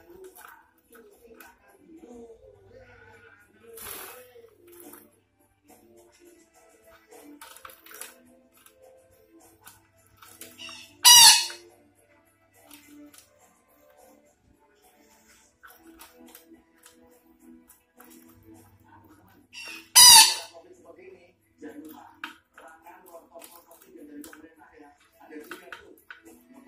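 A Sumatran parakeet (betet) giving two loud, harsh squawks, about eleven and twenty seconds in, with a few fainter short calls between them.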